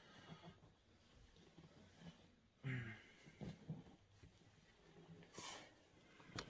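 Mostly near silence with faint handling noises. About three seconds in, a man gives a short grunt as he bends and lifts, and near the end there is a brief breath.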